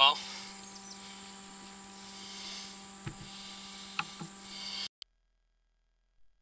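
Steady electrical hum and hiss from the sewer inspection camera's recording system, with a few faint clicks, cutting off abruptly to dead silence about five seconds in as the recording is paused.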